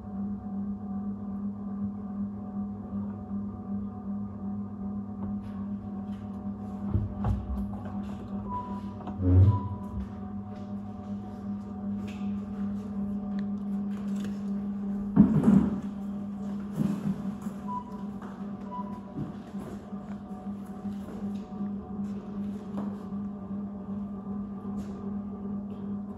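Steady low machine hum throughout, with a few knocks and bumps from handling containers. The loudest bump comes about fifteen seconds in.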